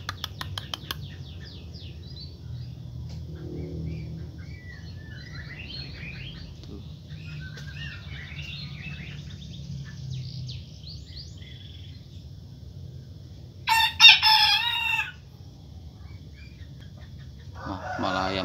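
A white bantam rooster crowing once, a short high-pitched crow about fourteen seconds in. Faint small-bird chirping comes earlier.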